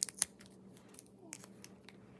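Hands handling a small piece of clear plastic close to the microphone: a few short, sharp clicks and crinkles, the two loudest near the start.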